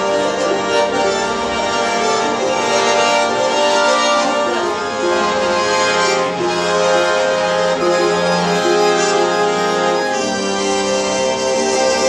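Live accordion playing a melody over sustained chords, with a small plucked string instrument accompanying, in an instrumental passage of a traditional Georgian song without singing.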